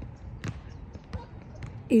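Basketball bouncing on an outdoor paved court: a couple of dull thuds about a second apart, over steady low background noise.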